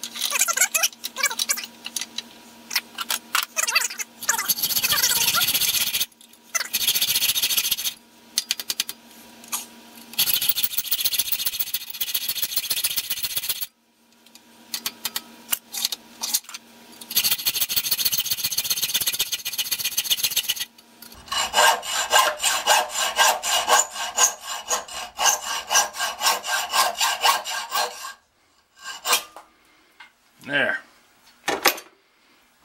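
Hand hacksaw cutting through a steel bolt clamped in a bench vise, stroke after stroke in several long runs with short pauses between them, and a faster, louder run near the end.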